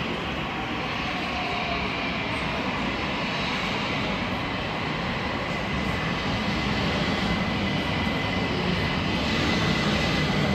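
A London Overground Class 378 electric train running into the platform. The rumble of wheels and traction gets louder as it approaches, and a steady high whine sets in about halfway through.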